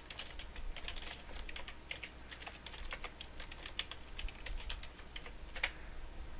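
Typing on a computer keyboard: quick, irregular runs of key clicks as a username and password are entered, with one louder keystroke near the end.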